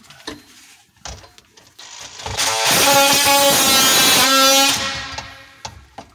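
A cordless DeWalt power tool runs for about two and a half seconds as a loud, steady buzz, starting a little over two seconds in, with a few small knocks before it.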